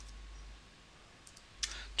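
A few faint computer keyboard clicks about a second and a half in, as a name is typed, over a low steady hum that cuts out for about a second in the middle.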